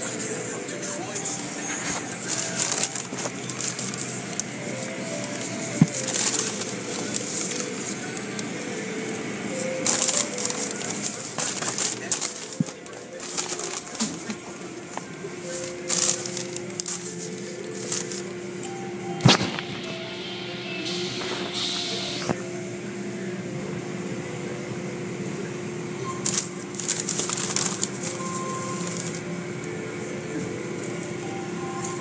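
Music with a melody plays over the steady rushing hiss of an automatic car wash, with repeated louder surges as water spray and cloth strips sweep over the car.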